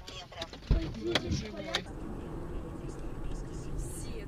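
A thump and a few spoken words inside a car in the first two seconds, then steady engine and road noise heard from inside the car's cabin.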